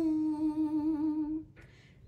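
A woman's unaccompanied voice holds one long sung note with a slight waver, ending about one and a half seconds in, followed by a brief near-silent pause.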